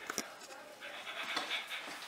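A dog panting quietly, with low voices in the background.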